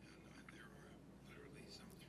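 Near silence in a pause between phrases of speech, with only faint traces of a voice in the background.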